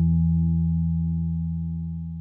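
The song's final chord, played on distorted electric guitar, ringing out and slowly fading away.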